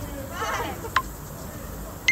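Two short, sharp electronic beeps about a second apart, with a person's voice wavering up and down in pitch between them, as in laughter.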